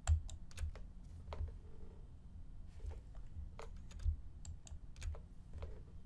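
Typing on a computer keyboard: irregular keystrokes, a few landing with a dull thump.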